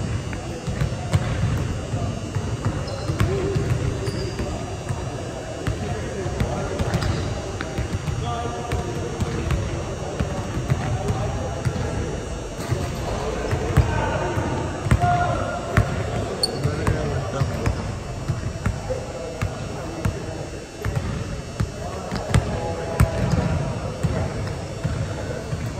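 A basketball bouncing and being dribbled on a hardwood gym court: many short, sharp knocks through the whole stretch, with indistinct voices of players in the large hall.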